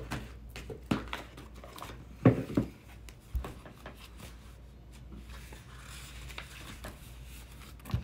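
Cards and a paper guidebook being handled on a tabletop: a few soft knocks and clicks in the first three seconds or so, then faint paper rustling.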